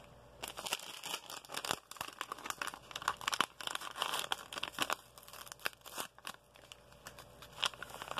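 A paper sachet of instant hot cocoa mix being crinkled and torn open: a dense run of crackling rips starts about half a second in and eases off around five seconds. More crinkling comes near the end as the packet is tipped.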